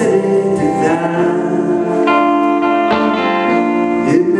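Live solo electric guitar playing through the venue's amplification, notes ringing and sustaining, with new chords struck about two and three seconds in.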